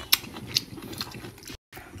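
A person chewing a mouthful of octopus poke close to the microphone, with a few faint clicks. The sound cuts out briefly near the end.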